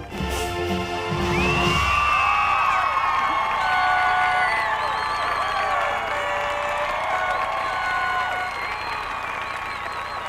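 Marching band brass and percussion sound a loud held final chord that cuts off about two seconds in, and a stadium crowd cheers, whoops and whistles through the rest.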